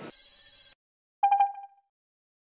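Notimex logo ident sound effect: a bright, high shimmering burst lasting just over half a second, then, after a brief gap, a short electronic tone in about four quick pulses that fades out.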